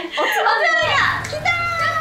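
Excited, high-pitched speech from two young women, exclaiming that the snacks have arrived.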